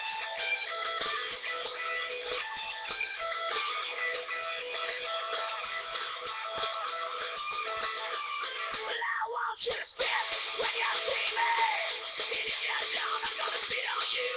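Rock music with guitar playing in the background, cut off by a brief dropout about two-thirds of the way through.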